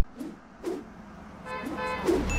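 A car horn sound effect honking briefly about a second and a half in, after a quiet stretch.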